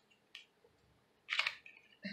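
A small plastic lip gloss tube being opened by hand: a faint click, then a short wet squish just past the middle as the applicator wand pulls out of the tube.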